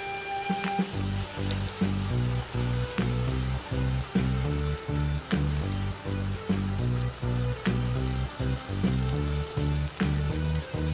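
Background music with a steady beat and bass line, starting about a second in. A faint sizzle of chicken frying in the pan runs underneath.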